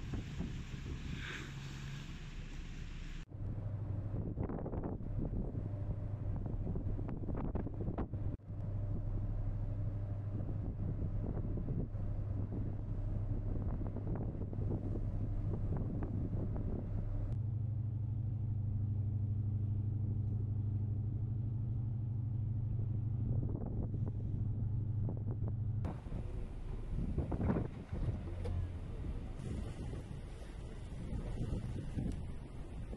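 Boat engine running steadily with wind buffeting the microphone and water noise over it. The sound changes abruptly about three seconds in, about halfway and near the end, as one clip cuts to the next.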